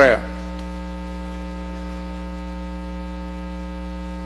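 Steady electrical mains hum, one unchanging buzzing tone with many evenly spaced overtones. A man's voice ends just at the start.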